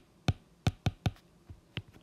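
Hard stylus tip tapping and clicking on an iPad's glass screen while handwriting, about eight sharp, uneven clicks in two seconds.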